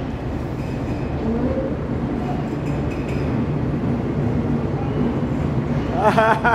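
Passenger train pulling out of the station, a steady low rumble of the moving carriages and engine heard from the open carriage doorway.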